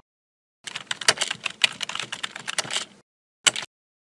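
Rapid computer-keyboard typing for about two seconds, then a single click about half a second later, as of text typed into a search box and the search button pressed.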